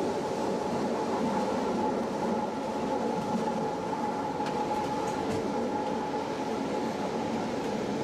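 Appenzeller Bahnen metre-gauge electric train running at steady speed, heard from the driver's cab: a continuous rumble of wheels on rail with a steady high whine over it.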